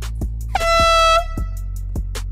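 A single air horn blast, steady in pitch and about two-thirds of a second long, starting about half a second in, over a steady hip-hop beat.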